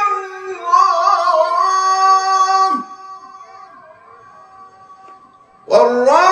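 A male Quran reciter's solo voice in melodic mujawwad style, holding long ornamented notes. One phrase lasts about two seconds and breaks off, a quieter pause of nearly three seconds follows, and a new phrase starts loudly near the end.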